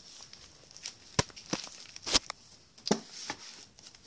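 Handling noise: a few sharp knocks and soft rustles as the phone is rubbed and bumped against fabric, with the loudest knocks a little over a second and about two seconds in.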